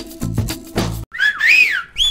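Background music with a steady beat stops abruptly about a second in, and a loud whistle follows, sliding up and then down in pitch like a comic sound effect.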